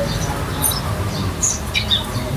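Small birds chirping: several short, high chirps at irregular intervals over a steady low rumble.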